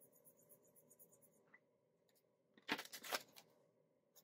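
Faint, quick scratching strokes of a felt-tip Sharpie marker colouring in a small circle on a card. About two and a half seconds in, a louder crisp rustle of paper banknotes being picked up and handled.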